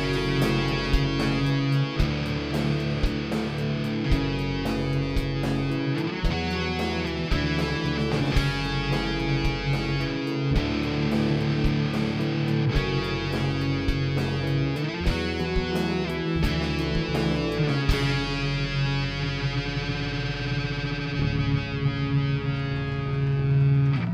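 Live rock band playing an instrumental passage on electric guitars, bass guitar and drums. About two-thirds of the way through, the drums stop and a held guitar chord keeps ringing out.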